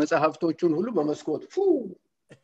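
A man's voice over a video call, a run of short syllables with rising and falling pitch that stops just before the end.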